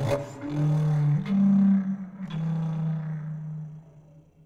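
Paetzold contrabass recorder playing low, buzzy held notes that step up and down in pitch, with sharp percussive attacks at some note changes. The sound fades away near the end.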